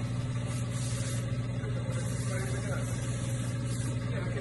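A steady low mechanical hum, as of an engine or motor running, with faint hiss coming and going over it.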